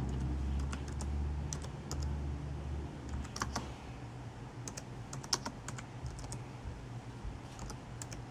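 Typing on a computer keyboard: irregular key clicks in short runs with pauses between them.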